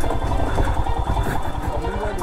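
Motorcycle engine running at low speed on a rough dirt trail, a steady run of rapid, even firing pulses.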